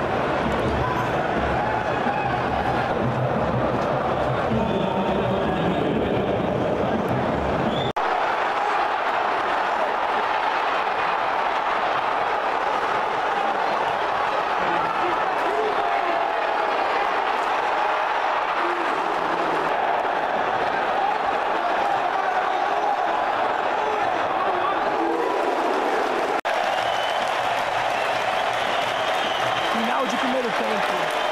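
Football stadium crowd: many voices chanting and singing together, with clapping, at a steady loud level. The sound changes abruptly about eight seconds in and again near the end, where the footage is cut.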